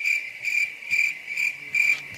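Cricket-chirp sound effect: one high note pulsing evenly about twice a second, about five chirps, that starts and stops abruptly.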